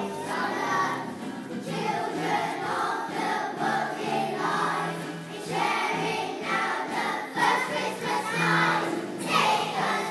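A group of young children singing a song together as a choir, led by a conductor.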